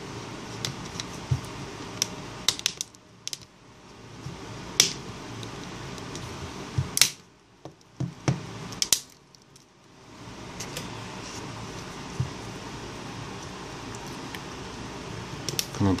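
Small sharp plastic clicks and taps as the LG Optimus 7 smartphone's side buttons and housing parts are handled and pressed together during reassembly, spread irregularly with a few louder snaps, over a steady low background.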